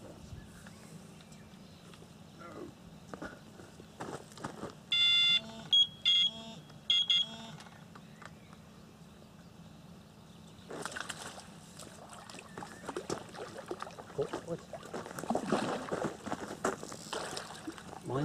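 Electronic carp-fishing bite alarm beeping, about four short loud beeps in quick succession about five seconds in.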